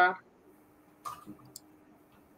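The end of a short spoken greeting, then two faint light clicks about a second in and half a second apart as baking tools are handled on a countertop. A faint steady low hum lies under it.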